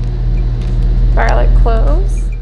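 A loud, steady low hum, with a brief spoken word over it near the end.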